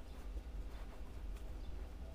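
Faint rustling and a few light ticks of two braided lines being worked together into a square knot by hand, over a low steady rumble.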